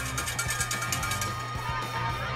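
Music: a fast ticking beat, about ten ticks a second, over a steady low tone.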